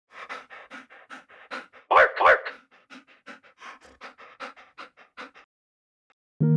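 A dog panting rapidly, about five breaths a second, with two louder, voiced huffs about two seconds in; the panting stops shortly before the end.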